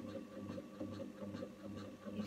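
Chi machine (Zen Chi oxygenator) running, its motor swinging the ankle cradle side to side with a pulsing hum and light ticks in a quick, even rhythm.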